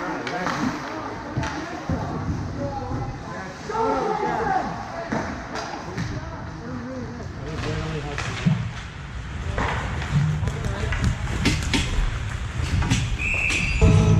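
Ice hockey play: players' indistinct shouts, then sharp clacks of sticks and puck on the ice and boards, and a short referee's whistle blast near the end as play is stopped.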